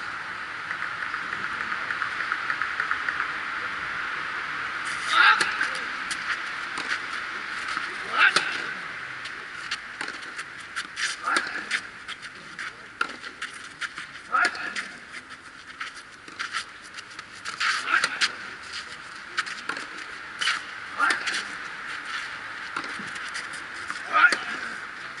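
Tennis rackets striking the ball in a rally on a clay court, starting with a serve about five seconds in. Loud, sharp hits come about every three seconds, with fainter hits and bounces between them, over a steady high hiss.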